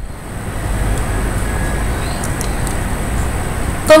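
Steady background noise, a low rumble with hiss and no distinct events; a woman starts speaking right at the end.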